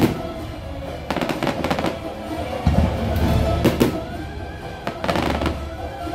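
Aerial fireworks bursting over show music: several clusters of sharp bangs and crackles, about a second in, around three seconds and again near five seconds, with the music playing steadily underneath.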